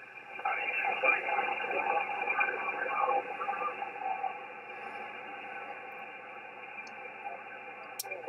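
Single-sideband shortwave receiver audio from an Icom IC-7610 on the 20-metre band: a weak, distant voice too faint to make out, under band noise and hiss. After about three seconds the voice fades and steady static remains.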